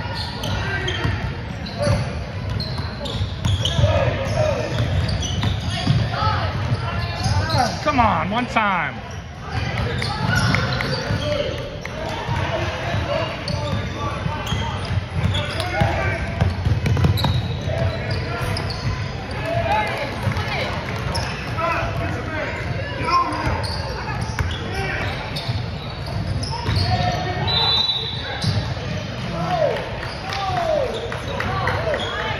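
Basketball dribbled and bouncing on a hardwood gym floor, with the indistinct voices of players and spectators echoing in a large gym.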